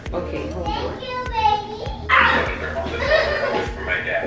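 Young children playing, talking and shouting, with a louder shout about two seconds in.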